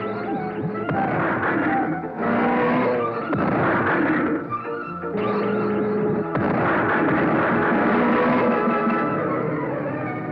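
Dramatic action music from a cartoon soundtrack, with several noisy blast effects laid over it, most likely the car-mounted ray cannon firing; the longest surge begins about six seconds in.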